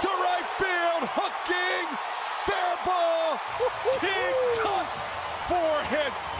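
A man exclaiming excitedly again and again: short, sharp-onset 'oh' cries about twice a second, each held briefly and then falling in pitch. About halfway through, crowd noise swells underneath.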